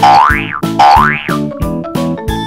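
Upbeat background music with a steady beat, overlaid by a cartoon 'boing' transition sound effect: two quick glides that rise and fall in pitch, back to back in the first second and a half.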